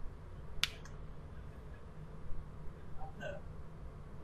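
A single sharp click, followed closely by a fainter second click, over a steady low hum.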